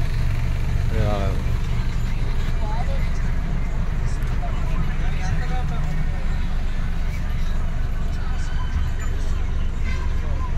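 Steady low rumble of a bus's engine and road noise, heard from inside the passenger cabin, with brief faint voices about a second in.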